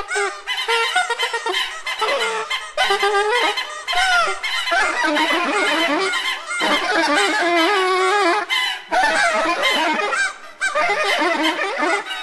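Free-improvised music for soprano saxophone and squeaking percussion: a dense run of wavering, honking, squawking pitched sounds, bending constantly in pitch and broken by a few brief gaps.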